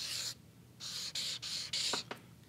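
Felt-tip marker drawing on a large paper pad: about five short hissing strokes, one at the start and four close together in the second half, as letters are written out.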